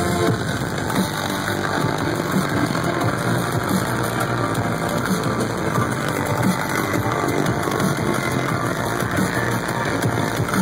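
Loud live electronic bass music from a concert sound system, playing steadily throughout.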